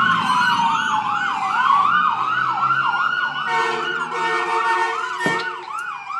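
Ambulance siren passing, a fast yelp repeating about three times a second over a slower wail that falls in pitch and then rises again. About three and a half seconds in, a steady pitched blast joins for about a second, and a single knock comes near the end.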